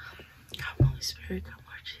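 A woman whispering a prayer under her breath, close to the microphone, in short breathy phrases. A low thump a little before a second in is the loudest sound.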